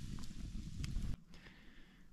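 Wood campfire crackling under a frying pan, with a few sharp pops over a low rumble of wind on the microphone; the sound cuts off suddenly about a second in.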